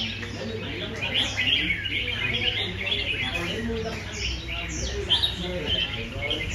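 Several caged red-whiskered bulbuls singing at once, a dense run of overlapping chirps and short whistled phrases, with people talking in the background.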